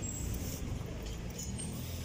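Steady city street background noise with distant traffic, no clear single event standing out.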